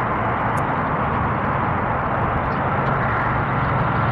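Steady roar of road traffic from a nearby highway, without a break.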